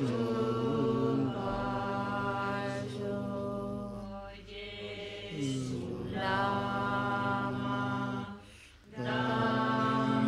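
Tibetan Buddhist prayer chanted by voices in long held tones, with a pause for breath about four seconds in and another near the end.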